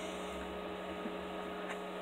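Faint steady electrical hum with a low hiss: room tone, with no distinct handling sounds.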